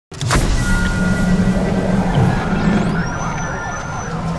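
Intro sting of music and sound effects: a sudden hit at the start, then a steady low rumble with held tones and a thin rising whistle near the end.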